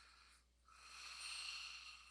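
Faint breathing: two soft, hissy breaths, the first fading out about half a second in and the second, longer and a little louder, running until just before the end.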